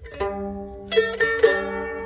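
A century-old mandolin strummed by hand, a light stroke and then three stronger strums close together, the chords ringing on afterwards. The instrument is out of tune.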